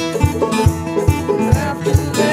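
Banjo and acoustic guitar playing together in a bluegrass-style instrumental passage, with a steady low thump on the beat about twice a second.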